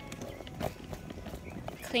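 Footsteps at a walking pace, a step roughly every half second or so, with a spoken word near the end.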